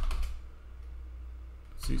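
A few keystrokes on a computer keyboard, typing briefly, over a steady low hum.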